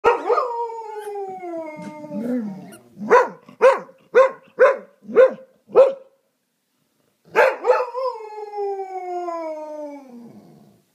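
English springer spaniel howling: a long howl falling slowly in pitch, then six short yelping barks about two a second, a pause, and a second long falling howl near the end.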